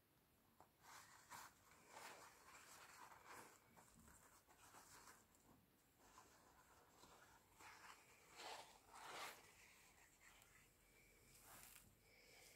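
Faint rustling of a thin paper napkin being handled and laid over a wet painted canvas, in several soft irregular bursts.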